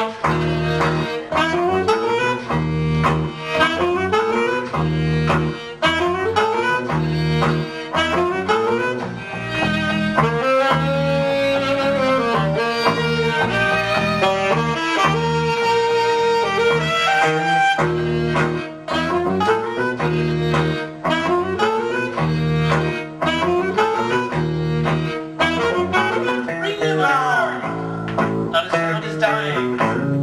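Live instrumental trio of saxophone, violin and acoustic guitar playing together, sax and bowed violin lines over a steady pulse of low notes about once a second.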